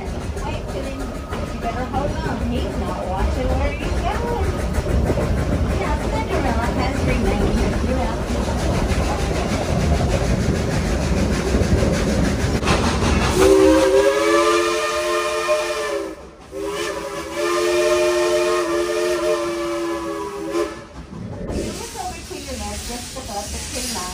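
Coal-fired steam train running with a low, even rumble, then its steam whistle sounds a chord of several tones in two long blasts starting about halfway through: a short break, then a longer second blast.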